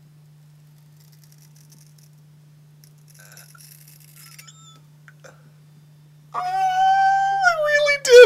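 Scissors snipping faintly through a thick beard. About six seconds in, a man lets out a long, loud, high cry, held on one note and then dropping lower.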